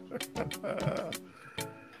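A lull in the talk: a man gives a few short, soft chuckling vocal sounds over faint background music.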